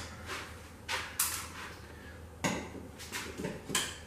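A paper drawing being unpinned from a wall: about five short, sharp rustles and clicks of paper and pins as it is worked loose.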